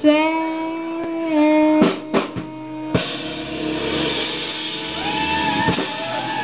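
Live nu-jazz band playing: a held note that steps down in pitch, a short run of drum hits about two seconds in, then the full band with drum kit, bass and guitar coming in at about three seconds.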